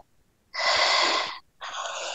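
Two forceful, hissing breaths blown out by a person over a video call's audio: a longer, louder one about half a second in, then a shorter, quieter one near the end.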